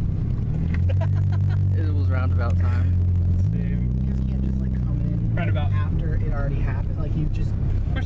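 Engine and road noise inside a moving car's cabin, a low steady drone that shifts pitch about three and a half seconds in, with faint voices over it.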